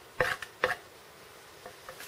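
Wooden board on wooden board: a top board laid over a cotton-and-ash fire roll and rubbed back and forth on a flat pine board, two short scraping strokes about half a second apart, then quiet handling.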